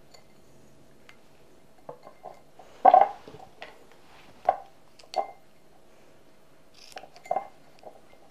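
Sticky tape being stretched and pressed across the rim of a cut-glass vase, with scissors snipping it: a series of sharp clinks and knocks on the glass, the loudest about three seconds in.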